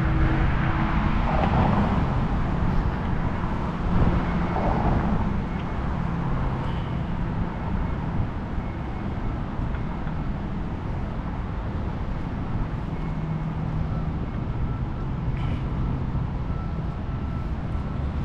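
Steady road traffic noise from passing cars, with a couple of louder swells as vehicles go by in the first five seconds.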